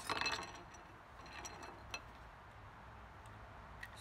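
Light clicks and clinks of fly-rod sections knocking together as they are handled: a cluster right at the start, then a few single clicks between one and a half and two seconds in.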